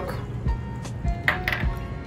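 Soft background music, with a few light clinks of small glass bowls being handled on a countertop, about half a second in and again after a second.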